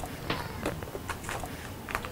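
Plastic food containers being handled: a run of irregular light clicks and knocks, several a second.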